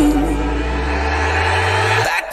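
Background music: a held chord over a steady bass, between sung phrases.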